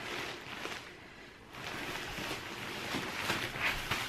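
Black plastic bin bag crinkling and rustling as heavy velvet curtains are pulled and shifted inside it, easing off briefly about a second in before carrying on.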